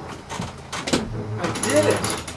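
A few scattered clicks and knocks, then a person's voice briefly near the end.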